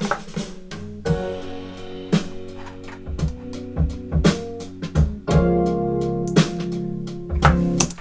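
Playback of a slow pop ballad demo in F at 85 bpm in 6/8: sustained piano chords under a melody line, with sparse drum hits.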